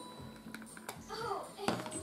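A few light clicks and taps, likely from makeup cases and palettes being handled, in a quiet room, with a faint voice heard briefly in the middle.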